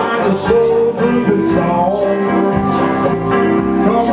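A man singing a country song into a microphone over a karaoke backing track with guitar, amplified through a PA.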